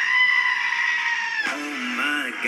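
A goat screaming: one long, loud call held for about a second and a half before it cuts off, then music resumes, heard through a television's speaker.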